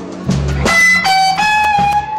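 Live electric blues band from a cassette recording of a slow blues: electric guitar over bass notes. About halfway in, a high note is bent up in pitch and held.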